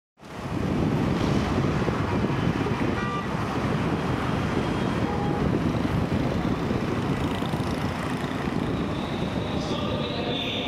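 Steady city traffic noise with wind, fading in at the start, mostly a dull low rumble. A brief faint pitched sound comes through about three seconds in.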